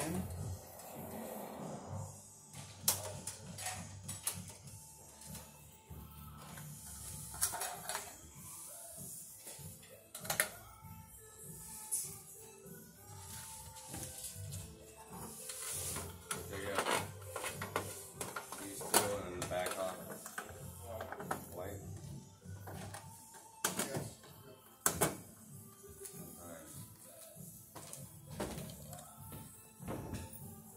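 Handling noise from working on a metal LED troffer light fixture: sharp clicks and knocks every few seconds as wires, connectors and the plastic centre cover are handled. Under them, faint speech and music play in the background.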